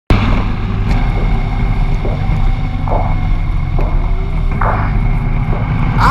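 Adventure motorcycle being ridden at speed: a steady low engine drone with road noise and a few brief higher-pitched surges.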